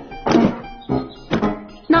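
Cartoon background music with a run of about four thunks roughly half a second apart, timed to luggage (a trunk and hatboxes) dropping onto a wooden floor.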